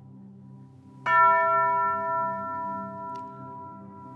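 A single strike on a hanging tubular chime, a metal tube bell on a wooden stand, about a second in; it rings with several clear tones that fade slowly.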